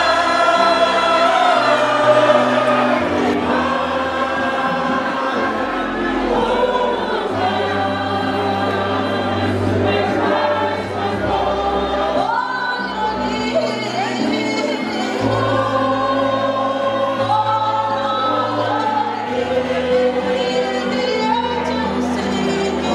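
A mixed choir singing a gospel-style song into microphones through a PA, over a bass line that steps from note to note.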